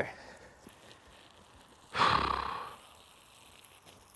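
A man's single long sigh, a noisy exhale about two seconds in that fades out within a second, over faint woodland quiet.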